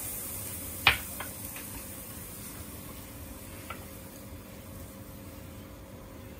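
A sharp click about a second in, then a couple of faint ticks, as wooden skewers threaded with monkfish are handled against a plate. A faint steady hiss runs beneath.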